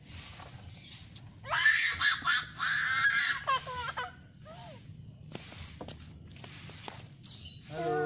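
A person's high-pitched shrieking squeals, loud and lasting about two and a half seconds from a second and a half in, ending in a few falling cries.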